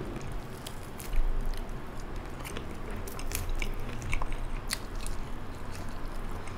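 A person biting into and chewing crunchy fried chicken close to the microphone, with irregular crunching clicks from the crisp crust. The loudest bite comes about a second in.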